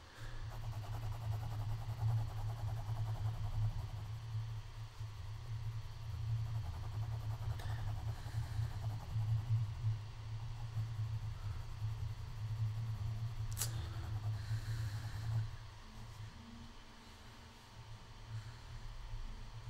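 Pencil shading on sketchbook paper: rapid back-and-forth strokes heard as a dull, scratchy rubbing that stops about fifteen seconds in. One sharp click comes shortly before the strokes stop.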